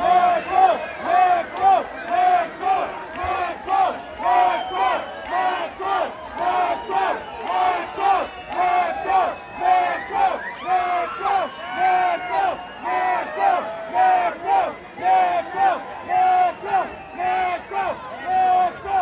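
Concert crowd chanting in unison, an even beat of about two to three chanted syllables a second, with scattered shouts over it, calling for an encore.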